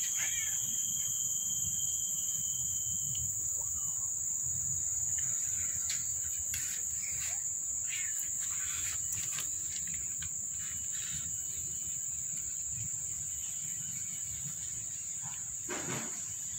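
Insects droning steadily at a high pitch throughout, with a second, lower insect tone that stops about three seconds in. A low background rumble lies underneath, and scattered soft clicks fall in the middle.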